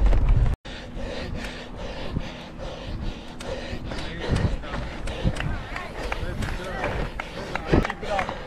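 Spectators' scattered voices calling out beside a mountain bike race course, mixed with short clicks and knocks, after a hard cut about half a second in from the rider's own talk over wind rumble.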